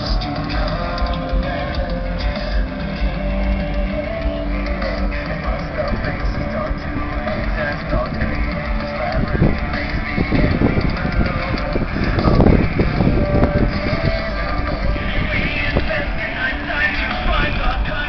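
Rock music with electric guitars and singing, played loud through a pickup truck's Alpine car audio system with its mids-and-highs amplifier turned up. A spell of low rumbling on the microphone rises over it about ten to fourteen seconds in.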